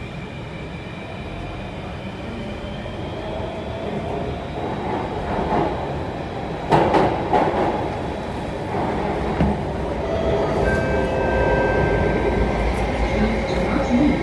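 Alstom Metropolis C830 metro train heard from inside the car, pulling away from a station: its motor whine climbs in pitch and the running noise grows louder as it picks up speed. A sharp clack from the wheels about seven seconds in.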